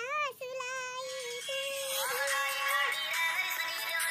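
A young girl singing, holding wavering notes. About two seconds in, a fuller music track with sung vocals comes in over it.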